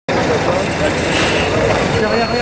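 Outdoor hubbub: several voices talking at once over a steady background din.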